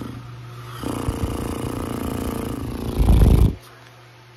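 A person's drawn-out, raspy, snore-like vocal sound, like a groan, for about three seconds, ending in a louder, deeper burst just before it cuts off, over a steady low fan hum.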